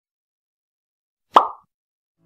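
A single short pop sound effect for a logo intro animation, sharp at the start and dying away within a quarter second, a little past halfway through.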